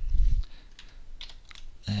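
A low thump, then a few faint, sharp computer keyboard clicks as copied text is pasted into a document.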